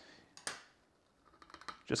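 A few light clicks from a plastic V60 dripper being taken in hand on its glass server: one clearer click about half a second in, then a few faint ticks shortly before the talking resumes.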